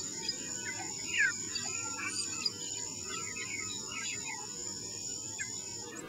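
Steady high-pitched insect chorus with a few short bird chirps scattered over it, one sliding downward about a second in.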